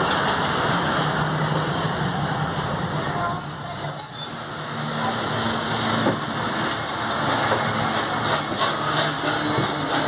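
Busy railway platform noise heard from a passenger coach's doorway: a crowd's voices and the shuffle of passengers climbing aboard with bags, over a faint steady hum from the stopped train.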